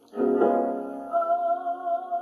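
Piano chord struck just after the start and left ringing, with a brighter held note wavering in level over it from about a second in.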